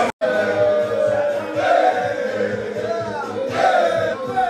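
Music with several voices singing together over a pulsing beat, cutting out for a split second at the very start.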